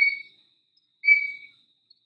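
A short, thin, high whistle-like tone about a second in, lasting about half a second.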